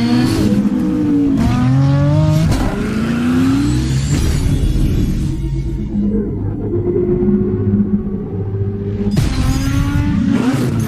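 Car engine revving in repeated rising sweeps, then holding at a steadier pitch, with a sudden loud burst about nine seconds in.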